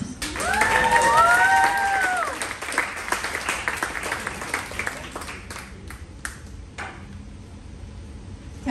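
Audience applause, with two voices cheering in a rising-then-falling 'woo' during the first couple of seconds. The clapping thins to a few scattered claps in the second half.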